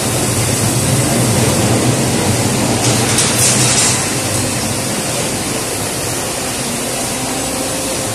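Automatic card-to-card laminating machine running steadily: a continuous mechanical rumble and hiss, with a short burst of higher hiss about three seconds in.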